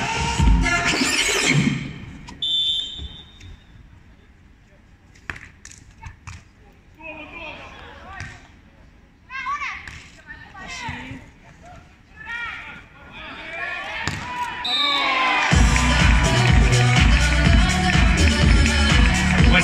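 Beach volleyball point being played: a referee's whistle, sharp hits on the ball and players' calls, then a short second whistle. Loud stadium music with a heavy beat comes in near the end, after the music at the start has faded.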